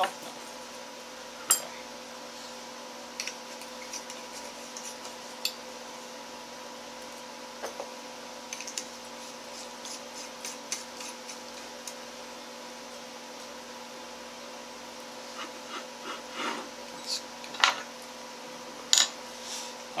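Scattered small clicks, taps and light scrapes of light bulbs being handled and twisted into the sockets of an antique three-bulb lamp. The clicks come sparsely, with a few louder ones near the end.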